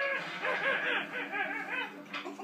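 A baby's excited squeals and babbling: a quick run of short, high, rising-and-falling yelps, several a second, trailing off a little toward the end.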